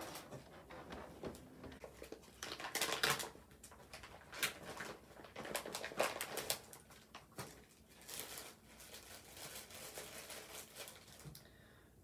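Clear plastic packaging crinkling and rustling in irregular bursts as a bundle of twine is unwrapped by hand.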